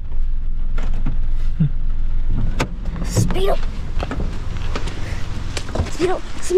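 Car cabin sound: a steady low rumble from a running car with scattered clicks, dropping away about two and a half seconds in.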